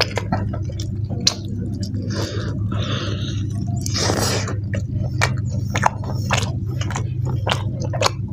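Close-miked chewing of mutton and boiled rice: wet mouth clicks and squelches, with a louder half-second rush about four seconds in as a mouthful goes in. A steady low hum runs underneath.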